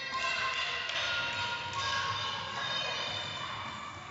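Children's high voices shouting and calling in an echoing sports hall, several overlapping held cries, with faint running footsteps on the wooden floor.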